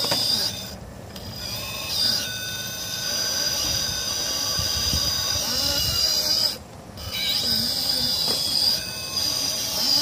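RC rock crawler's 2500kv brushless motor and geared drivetrain whining at a high pitch under load as it crawls. The whine cuts out briefly twice, about a second in and again near seven seconds.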